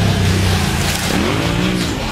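Side-by-side race car engines revving hard on a dirt trail, the pitch climbing sharply a little past a second in and falling again near the end as the drivers work the throttle.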